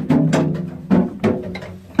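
Janggu (Korean hourglass drum) struck about four times, each stroke ringing briefly and dying away, opening the slow jungmori rhythm.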